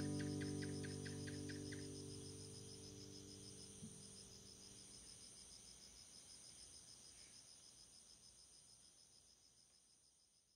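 Crickets and other insects chirping steadily under the song's last sustained chord, which dies away over the first five seconds; a short run of evenly spaced chirps comes in the first two seconds. The insect sound itself fades out gradually toward the end.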